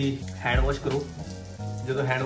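Background music with a wavering melodic line over a steady bass, over the even hiss of water running from a bathroom tap as hands are rinsed under it.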